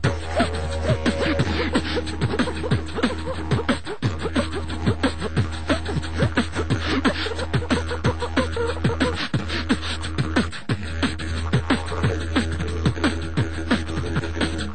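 Beatboxing: one person's mouth-made kick and snare sounds in a fast, dense, unbroken rhythm, with a few hummed tones near the start.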